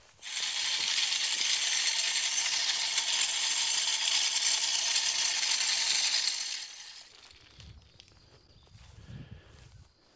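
Tripod spin-cast feeder's motor spinning its spinner plate and flinging out feed in a loud, steady rattling spray for about six seconds, then stopping: a successful test run of the feeder.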